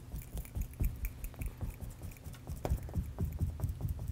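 Paintbrush dabbing paint onto a stretched canvas: soft, irregular taps, several a second.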